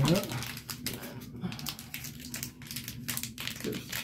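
Small plastic blind-bag packet crinkling and crackling in irregular bursts as fingers work at it to pull a collectible pin out.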